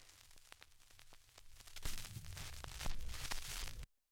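Surface noise of a 78 rpm record: hiss with scattered crackles and clicks, and a low rumble that grows louder about two seconds in. It cuts off suddenly just before the end.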